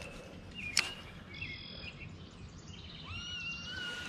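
Wild birds chirping and whistling over a faint outdoor hiss, with a clear held whistle in the last second. A single short click about three-quarters of a second in.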